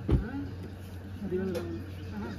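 Brief low-voiced talk among a few men, with a sharp low thump just after the start over a steady low hum.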